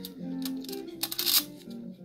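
Background guitar music playing steadily, with a brief metallic clink about a second in as a small screw is taken from a stainless steel screw rack.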